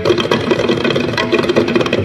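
Two tabla sets played together in a fast, dense, even run of strokes, without the ringing bass strokes heard around it.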